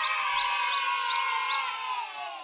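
A sustained chord of many tones, slowly sinking in pitch as it fades, with small high chirps repeating on top: a musical sound effect or stinger.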